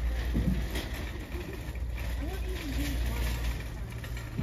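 Shopping cart rolling across a hard store floor with a steady low rumble. Other people talk in the background.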